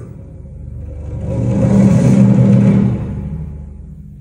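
A deep rumble swells up about a second in, is loudest around the middle, and fades away again, over a steady low drone.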